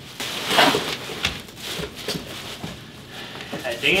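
Bubble wrap crinkling and rustling as a hard plastic pistol case is lifted out of a cardboard shipping box and unwrapped, with short knocks from the case and box.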